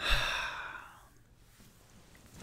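A man's sigh: one long, breathy exhale starting right at the beginning and fading out after about a second.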